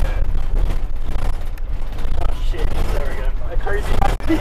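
Loud low rumble of a bus on the move, heard from inside: engine and road noise, with indistinct passenger voices.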